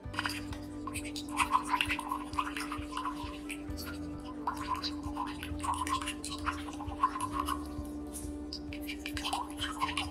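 Tea poured in a steady stream from a glass jar into a glass cup, splashing and bubbling as the cup fills, over soft background music.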